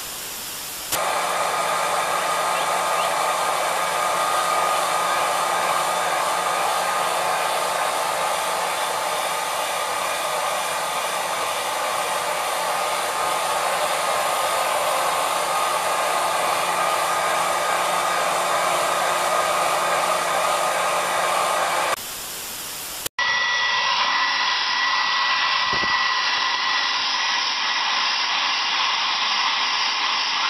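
Electric hair dryers blowing steadily, with a fixed whine in the airflow. A short hiss comes right at the start and again about three quarters of the way through, then a cut to a second dryer with a higher whine.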